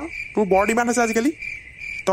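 Crickets chirping steadily as a background ambience, with a short voice sounding for just under a second about half a second in.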